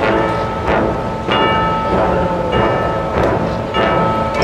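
Marching band front-ensemble percussion playing a slow run of struck, bell-like notes, about six strikes, each ringing on over the next.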